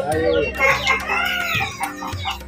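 A rooster crowing once, one long call that rises and then falls, over background music.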